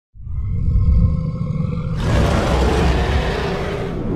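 Logo-intro sound effects: a deep rumble with faint held tones, joined about two seconds in by a loud, rough, noisy rush.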